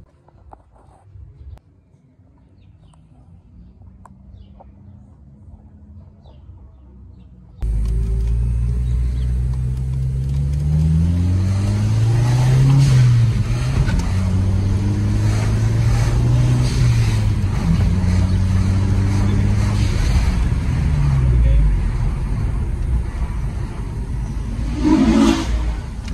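Single-turbo Audi four-cylinder engine: at first a faint steady idle under the open hood, then, from about eight seconds in, heard loud from inside the cabin under hard acceleration. The engine note climbs, drops back, climbs again and holds, then falls away as the car slows.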